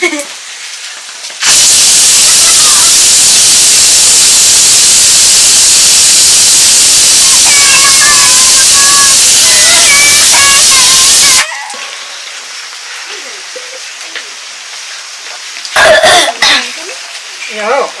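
Loud, steady sizzling from a pot on an open wood fire as food or liquid hits hot oil. It starts suddenly about a second and a half in and cuts off sharply about eleven seconds in, with faint voices under it; children's voices follow near the end.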